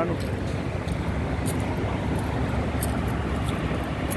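Steady low rumble of diesel semi-trucks at a truck stop, with a few faint light ticks over it.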